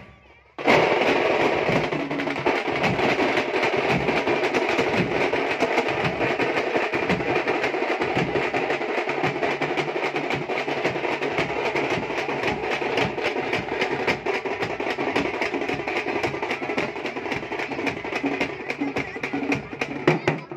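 A thamate drum band plays a fast, dense rolling rhythm on stick-beaten frame drums, shoulder drums and big bass drums. It starts abruptly about half a second in, after a brief gap.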